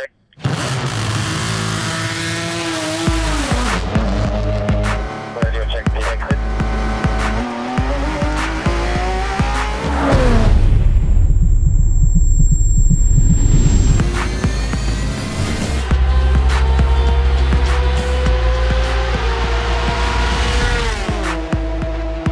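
Porsche 911 RSR GTE race car's flat-six engine revving hard and climbing through the gears, with sharp drops in pitch at the shifts. About ten seconds in it comes through loudest, its pitch falling sharply as it goes by, then it climbs again and drops off near the end.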